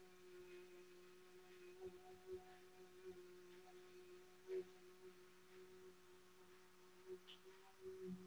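Near silence: a woman's sustained "ooh" toning held on one steady pitch, faint and nearly muted, with a few soft faint blips.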